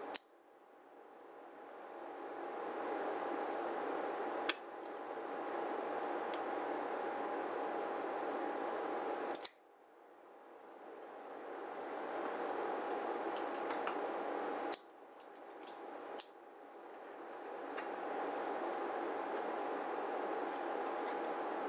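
Electric fan running steadily with a faint whine, broken by a few sharp clicks from the Xikar guillotine cigar cutter being worked to clip the cigar's cap. After each of the first clicks the hum sinks and slowly swells back.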